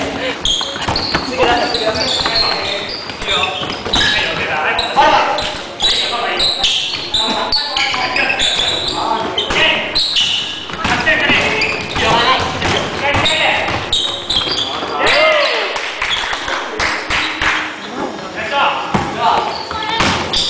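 Basketball game on a wooden gym floor: the ball bouncing as it is dribbled, sneakers squeaking, and players' voices calling out, all echoing in a large gym hall.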